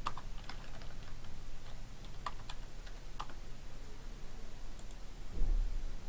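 Typing on a computer keyboard: scattered single keystrokes at an unhurried pace, with a low thump near the end.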